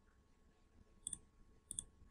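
Two faint clicks of a computer mouse button, about 1.1 and 1.75 seconds in, over near silence.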